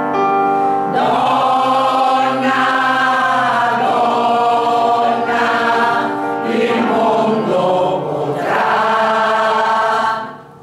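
Women's choir singing together, coming in about a second in over a held piano chord, and cutting off at the end.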